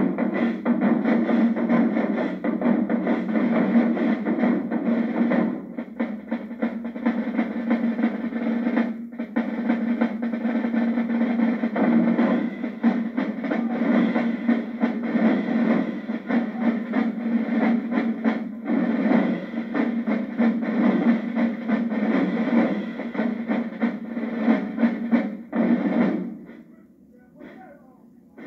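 Marching band drumline playing a cadence together: marching snare drums, bass drums and crash cymbals in a dense, driving rhythm with a few brief breaks. It stops right at the end.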